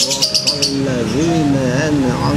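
A man's voice chanting in a slow, melodic sing-song that slides up and down in pitch, as in Quran recitation, with a few short high chirps near the start.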